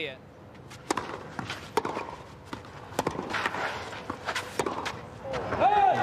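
Tennis rally on a clay court: sharp pops of rackets striking the ball, with bounces in between, about once a second over a quiet crowd. A voice rises near the end.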